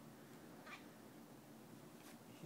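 A newborn baby gives one brief, faint whimper a little under a second in while straining, which the parent takes for trying to poop.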